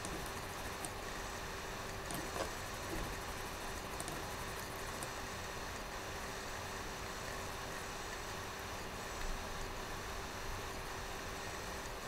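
Room tone: a steady hiss with a faint steady hum and a few faint taps.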